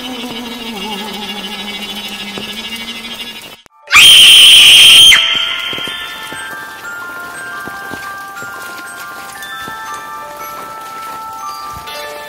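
Horror sound-effect track: a low, wavering drone that cuts out, then a sudden, very loud, harsh burst about four seconds in that lasts just over a second. Scattered high chime-like notes follow and ring out one after another.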